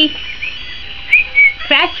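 Two short, high, bird-like whistled chirps, followed by a brief voice near the end.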